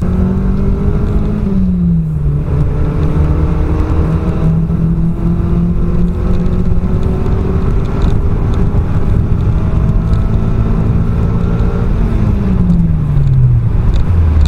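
Car engine under full-throttle acceleration, heard from inside the cabin: the revs dip briefly about two seconds in, then climb slowly and steadily under load, and fall away over the last two seconds.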